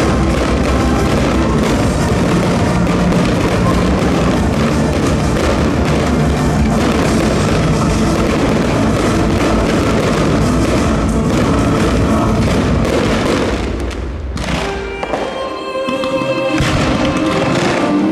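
A dense barrage of aerial firework shells bursting one after another, booms and crackle, over music. Near the end the bursts thin out and the music comes through more clearly.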